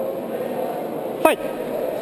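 Chatter of spectators around the cage, with one brief sharp sound that drops steeply in pitch a little past the middle.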